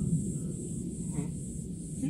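Outdoor background noise: a steady low rumble with a constant high-pitched hiss and no distinct event.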